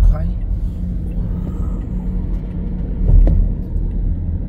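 Steady low road and engine rumble inside a moving car's cabin, with one louder low thump about three seconds in.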